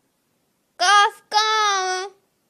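A young child's voice reciting an alphabet word in a sing-song chant: two high syllables, the second drawn out.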